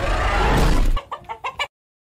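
A loud, rough film dinosaur roar with a deep rumble for about a second, then about five quick chicken clucks. The sound then cuts off abruptly.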